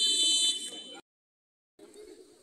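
Referee's whistle blown once, a loud shrill blast lasting under a second, signalling the end of a penalty kick. The sound cuts off suddenly about a second in.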